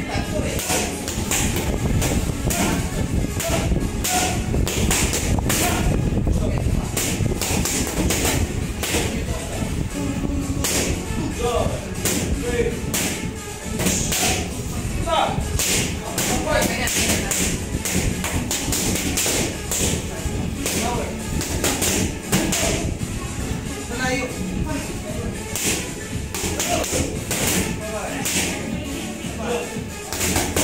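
Boxing gloves striking focus mitts in quick combinations, sharp smacks coming in bursts, with background music and voices.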